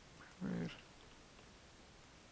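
A single short vocal sound, about a third of a second long, about half a second in, over quiet room tone.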